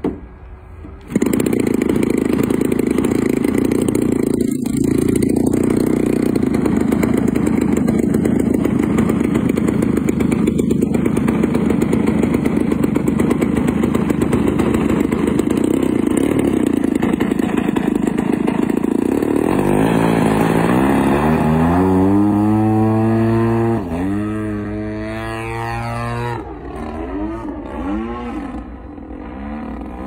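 Engine of a large RC aerobatic model propeller plane, hand-started by flipping the propeller: it catches about a second in and runs steadily. About two-thirds of the way through it revs up for takeoff, then its pitch rises and falls and it grows fainter as the plane flies away.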